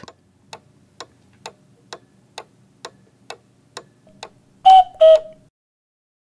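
Clock ticking, a little over two ticks a second, followed near the end by two chime notes about half a second apart, the second one lower.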